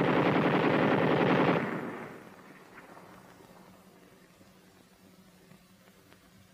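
Thompson submachine gun firing a long full-automatic burst of .45 ACP, shots packed at about ten a second, which stops about a second and a half in and fades out quickly. A faint steady hum follows.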